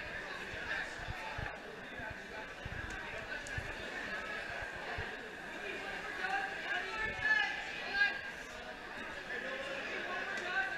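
Crowd chatter and overlapping indistinct voices in a large gym hall, with a few low thuds.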